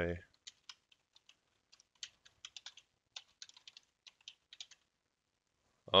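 Typing on a computer keyboard: a quick, irregular run of keystrokes lasting about four seconds, stopping about a second before the end.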